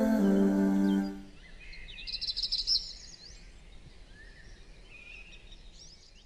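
A sustained hummed vocal chord, the close of a nasheed, ends about a second in. Birds chirping follow, briefly louder a couple of seconds in, then fading out.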